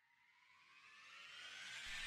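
Near silence, then from about a second in a faint rising transition sound effect (a riser) that climbs in pitch and swells in loudness.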